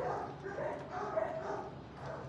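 Shelter dogs whining and yipping: a string of short pitched calls that bend up and down in pitch.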